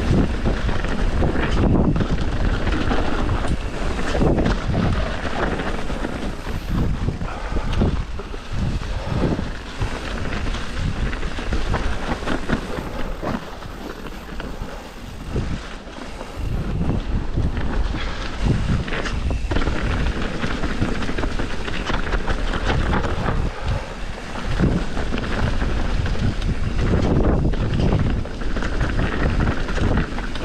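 Mountain bike being ridden fast down a woodland trail: wind buffeting the microphone over the rumble of tyres on leaf-covered dirt, with frequent knocks and rattles as the bike goes over bumps. It is a little quieter around the middle.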